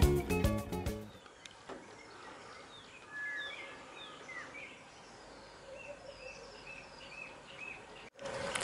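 Music ends about a second in, leaving a quiet outdoor background with birds calling: a few swooping chirps, then a run of about six short, evenly spaced notes near the end.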